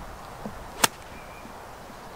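A golf iron striking a ball off the fairway turf: one sharp click a little under a second in.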